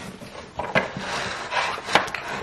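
Wooden bath tray rubbing and scraping against its cardboard box as it is handled, with a knock about a second in and a sharper, louder knock near the end.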